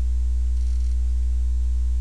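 Steady electrical hum with a stack of even overtones, a constant low buzz on the recording, typical of mains hum picked up by the microphone or audio chain.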